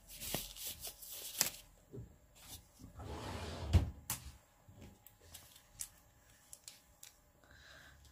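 Light handling noises: the rustle and snap of a disposable glove being pulled on, scattered small clicks, and one sharper thump a little under four seconds in.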